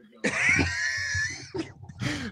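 A man laughing hard in a high-pitched, wheezing squeal for about a second, then trailing off into quieter breathy laughter.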